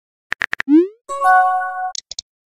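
Chat-app message sound effects: three quick clicks, then a short rising 'bloop' pop and a bright electronic chime of several held tones as a new message bubble pops up.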